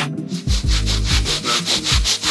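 Hand scrub brush scrubbing a washing-powder detergent solution into a wool rug's pile, in quick rhythmic back-and-forth strokes, several a second, starting about half a second in.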